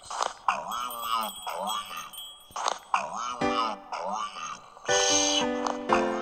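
A voice making wordless sounds whose pitch swoops up and down. About three and a half seconds in, electronic keyboard notes take over, with a louder chord about five seconds in.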